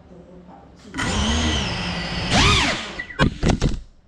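GEPRC Cinelog 35 FPV cinewhoop's motors and propellers spinning up with a high whine about a second in. The pitch rises and falls, then comes three short throttle blips near the end, while the drone stays close to the floor.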